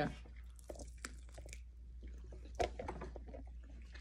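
A person biting into and chewing a glazed chicken wing: soft, irregular wet crunches and mouth clicks, with one louder crunch a little past halfway.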